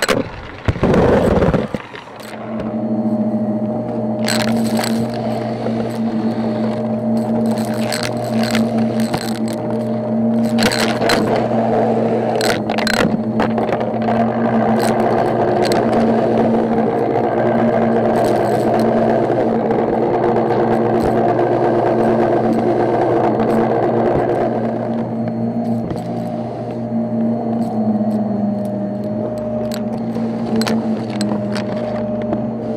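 Shark upright vacuum cleaner running on carpet. Its motor hum settles in about two seconds in, with crackling and sharp clicks from confetti and beads being sucked up, most of them in the first half.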